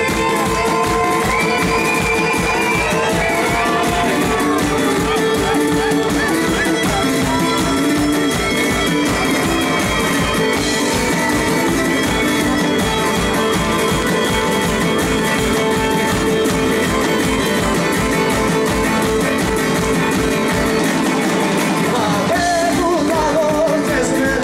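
Live Greek folk-rock band playing an instrumental passage: laouto, bass and a steady drum beat under held notes and a wandering lead melody. The drums drop out about two seconds before the end, and a male voice starts singing.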